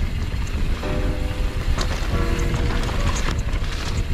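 Background music with held notes, over the rush of wind on a helmet-mounted camera microphone and the rumble and rattle of a mountain bike riding down a dirt trail.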